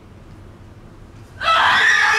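A woman screaming, loud and high with a wavering pitch, breaking in about one and a half seconds in and still going at the end.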